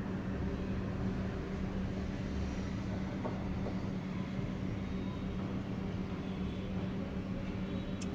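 A steady, low, constant-pitch mechanical hum with faint room noise, unchanging throughout.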